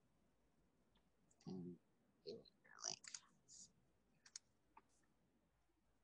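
Near silence on a video-call line, broken by a few faint clicks and a brief, faint murmur of a voice.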